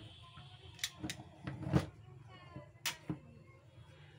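Sharp clicks and knocks from a disassembled Endico wood router's plastic motor housing and a screwdriver being handled on a workbench, about five in all, the loudest a little before halfway.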